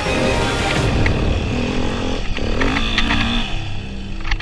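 Dirt bike engine revving up and down as it climbs, heard together with background music.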